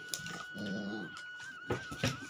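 Two black Labradors play-fighting: one gives a short low growl about half a second in, amid scuffling, with a sharp knock near the end.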